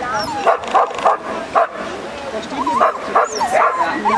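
A dog barking excitedly: four sharp barks in quick succession in the first two seconds, then higher yelping or whining sounds mixed with voices.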